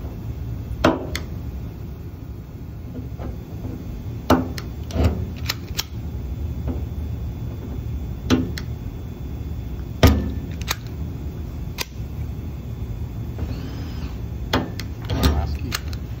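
Solidus Micro Spot dent-repair stud welder firing, each copper pulling key welded onto the bare steel body line with a sharp snap, about eight times at irregular intervals of one to three seconds, over a steady low hum.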